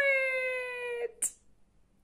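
A woman's voice drawing out the word "it" in one long, high call, its pitch falling slightly, that ends about a second in with a short hiss. After that only faint room tone.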